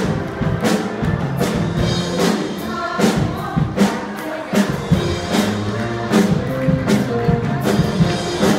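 Live pop-style music: a band with a steady drum beat about every 0.8 seconds, and a group singing together.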